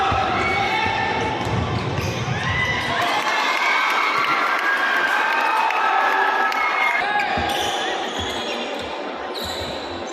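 Basketball game sounds: sneakers squeaking on the hardwood court in short sliding chirps, and a basketball bouncing, with voices shouting in the background.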